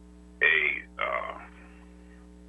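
A person's voice, two short indistinct utterances in the first second and a half, over a steady electrical hum that carries on alone afterwards.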